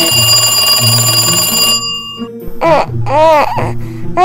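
A Minnie Mouse toy telephone's electronic ring, a fast trilling ring that stops about two seconds in, followed by a baby doll's two rising-and-falling wailing cries near the end, over background music.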